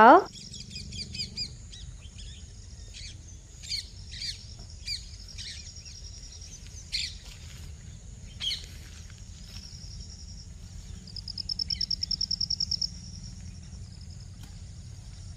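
Birds chirping: scattered short, high chirps, then a fast, evenly pulsed trill lasting about two seconds near the end, which is the loudest call. A low steady background rumble runs underneath.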